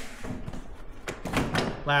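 An ATV seat being set down onto the machine's plastic bodywork and pushed into place: a few dull thunks and scraping rubs.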